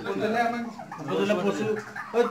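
A flock of domestic turkeys calling softly, mixed with a person's voice.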